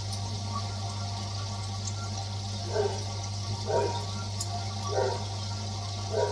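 Aquarium internal filter running: a steady rush of bubbly water from its outlet over a constant low hum. A short burst of sound repeats about once every second and a bit from about halfway through.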